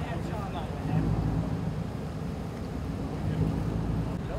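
Low, steady rumble of a motor vehicle's engine running, swelling about a second in, with faint voices at the start.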